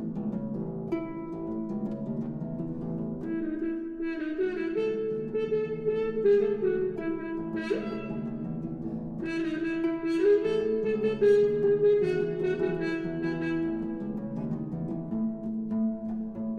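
French horn and concert harp playing a duet. A steady low pattern of notes runs underneath, and brighter, busier high notes come in about three seconds in.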